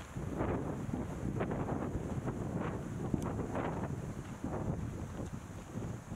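Wind buffeting the camera's microphone in a steady low rumble, with footsteps crunching on a dirt trail about once a second.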